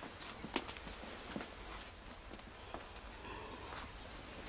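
A few faint, irregularly spaced clicks of footsteps, shoes on a hard floor.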